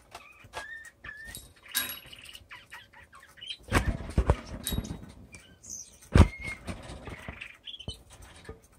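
Small cage birds giving short, high chirps, with louder rustling and knocking around four seconds in and a sharp knock just after six seconds.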